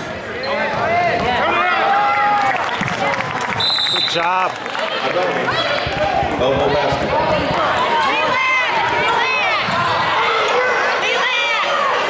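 Basketball sneakers squeaking repeatedly on a hardwood gym floor during play, with a referee's whistle blown once, briefly, about four seconds in, and voices in the gym.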